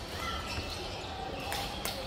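Faint sounds of a badminton rally in a large, echoing sports hall: a shuttlecock being hit and players' footwork on the court, over the background murmur of the hall.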